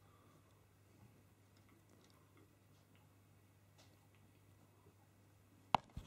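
Quiet handling of a large metal hand tool and clear tubing, with a few faint ticks, then one sharp click near the end as the tool is moved and set down.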